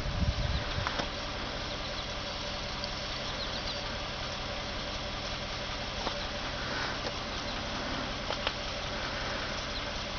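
A vehicle engine idling steadily, with a few light knocks in the first second.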